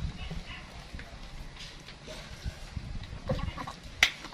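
Soft eating and handling noises of boiled sweetcorn cobs being chewed and turned in the hands, with scattered light knocks and crackles.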